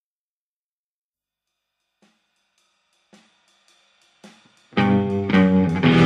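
Silence between two songs, then from about two seconds in a few soft drum hits and light hi-hat ticks as the next song begins, and just before five seconds a band with drum kit and guitar comes in loudly.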